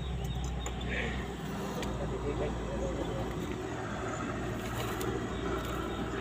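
A steady low rumble with faint voices in the background.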